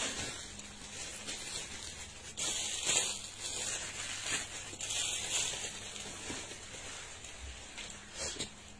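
Rustling of clothing packed in plastic bags being handled, with louder stretches of rustling about two and a half and five seconds in.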